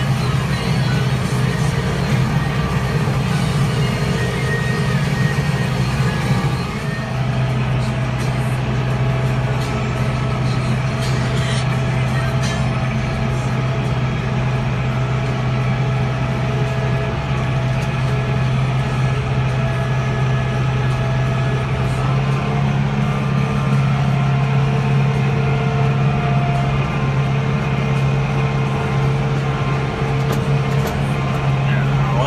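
Tractor engine running steadily with a low drone while driving with a round hay bale on the front loader.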